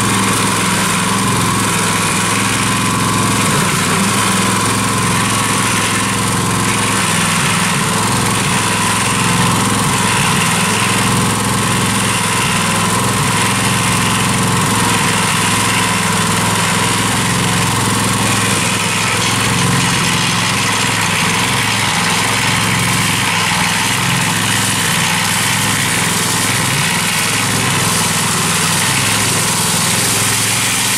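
Small engine of a portable cement mixer running steadily, turning the drum with wet concrete inside.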